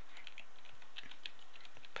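Faint, quick keystrokes on a computer keyboard as a web address is typed in.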